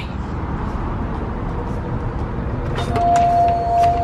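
Steady low background noise, then about three seconds in a store's electronic entry chime sounds as one steady beep about a second long, set off by someone walking through the entrance.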